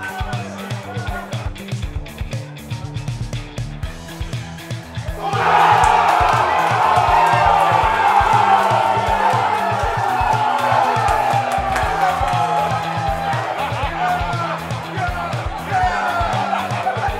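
Background music with a steady beat; about five seconds in, a crowd of football fans breaks into loud cheering and shouting at a goal, and the cheering carries on over the music.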